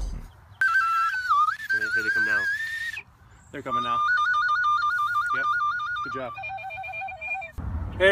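Tin whistle playing a short tune: a wavering high note, then a fast trill between two notes, then a lower wavering note near the end.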